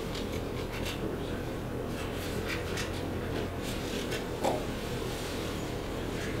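Meeting-room ambience: a steady low hum with faint scattered rustles and small clicks of paper handling and pen writing, and one brief, slightly louder sound about four and a half seconds in.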